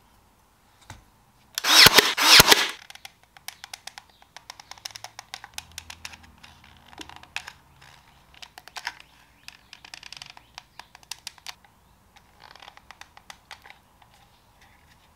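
A loud burst of several sharp bangs about two seconds in, then a long, irregular run of small clicks and taps as a hot glue gun is worked over a turned wooden furniture foot.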